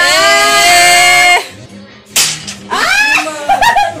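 A person's high-pitched cry, held on one note for about a second and a half and then cut off, followed by a single sharp crack.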